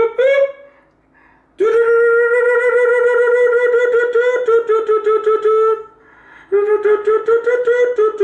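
A man making weird noises with his voice: a long, steady held note with a fast flutter through it, then a second one at the same pitch after a short pause.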